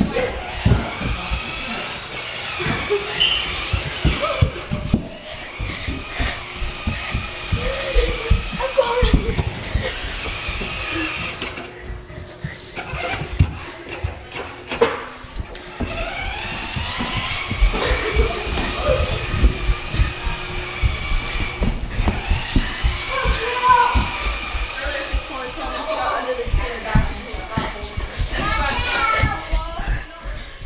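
Voices and music in a room, with held pitched tones throughout and frequent short low thumps.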